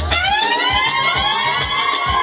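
A siren-like sound glides up in pitch and then holds, layered over dance music whose beat goes on underneath.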